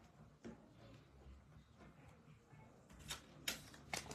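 Very quiet handling of small card-stock die cuts on a cutting mat. A faint click comes about half a second in, and a few light taps and clicks come in the last second or so.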